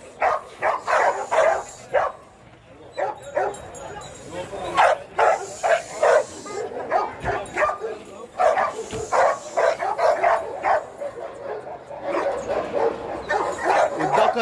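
Dogs barking and yipping repeatedly in short, sharp calls, with a brief lull about two seconds in.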